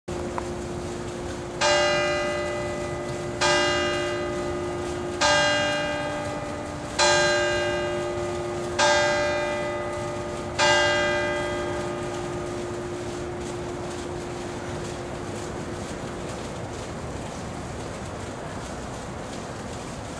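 A single church tower bell, one of a ring of six cast by Ottolina, struck six times at an even pace of about one stroke every two seconds, each stroke ringing out and fading. After the sixth stroke the hum dies away slowly.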